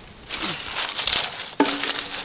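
Dry crinkling, crushing rustle of coconut husk (bunot) being pulled apart and handled as kindling for a charcoal fire.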